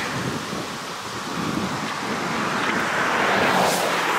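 Outdoor rushing noise without clear tones, swelling louder over the last second or so.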